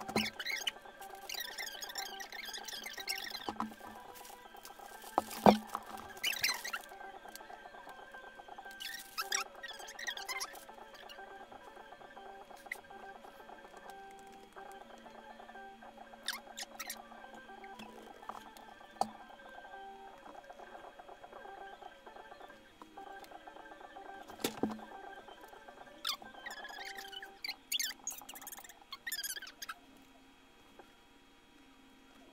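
Scattered handling noises: rustling, scraping and light clicks as paper and a cardboard prize wheel are handled and set up, with a couple of sharper knocks about five seconds in and near the end. Faint steady tones hum underneath.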